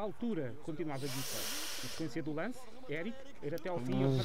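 A man's voice giving Portuguese-language TV commentary on the futsal match, played back fairly quietly, with a short hiss about a second in.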